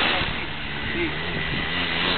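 Small engine of a homemade go-kart buggy running steadily, a low even hum under a hiss.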